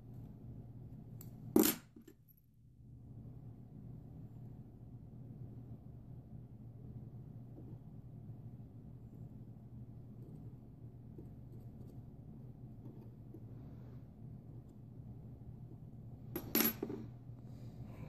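Two sharp metallic clicks, one about a second and a half in and a smaller one near the end, as small scissors and a thin metal tool are handled while trimming and tucking a cotton wick on a rebuildable atomizer. A faint steady low hum runs between them.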